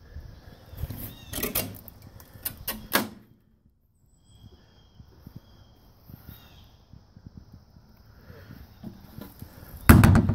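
Knocks and clunks from a metal stock trailer as someone moves about in it, loudest in the first three seconds, then a brief silence and quieter scattered taps. Right at the end comes a loud scrape as a hand grips and turns the round aluminium twist-vent cover in the trailer wall.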